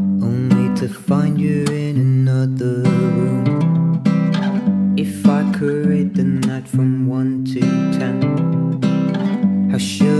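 Song with a strummed acoustic guitar playing chords, the chords changing every second or so.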